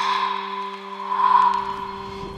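Trailer background music: a sustained low drone with a hazy swell that builds and peaks a little past the middle, then eases back.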